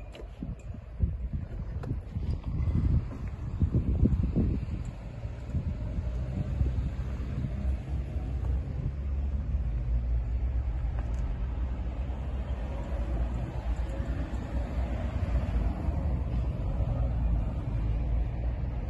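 A steady low rumble, with a few knocks and louder swells in the first four seconds.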